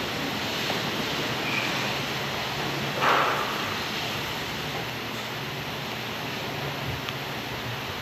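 Steady background room noise in a church: an even hiss with a faint low hum, and a brief soft noise about three seconds in.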